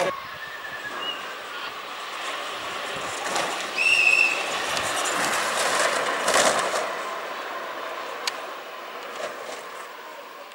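Downhill speed-down kart rolling fast on asphalt: a continuous rushing rumble of its wheels, with a few short high-pitched squeals from the wheels, the loudest about four seconds in, and a louder swell as it passes about six seconds in before fading away.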